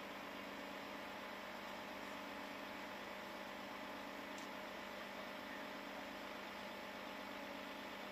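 Metrobus city bus idling at a stop, a steady, unchanging hum.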